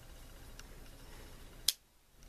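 Handling of a Wenger Swiss army knife, with one sharp click near the end as a blade snaps shut on its backspring, and a fainter tick before it.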